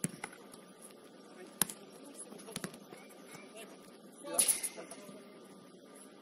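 A football kicked on an artificial-turf pitch: a sharp knock as the ball is struck at the start, then two more knocks of the ball over the next few seconds, with players' voices in the background and one loud shout about four seconds in.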